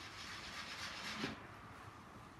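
Faint rubbing and rustling of hands working a sheet of sugar flower paste against a metal leaf cutter on a board. It lasts just over a second, then fades.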